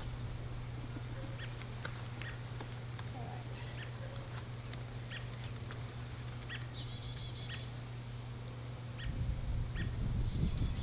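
Birds chirping, with a short rapid trill about seven seconds in, over a steady low hum.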